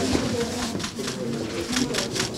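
Low murmur of voices in a crowded room, with a scatter of sharp clicks from press camera shutters.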